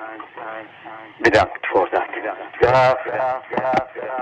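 Hardcore gabber track with a voice sample filtered to a narrow, radio-like sound, the pitch wavering. A few loud hits come at uneven spacing.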